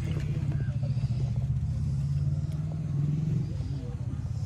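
Low, steady rumble of a running engine with a rapid even pulse, a little louder about three seconds in, with faint voices over it.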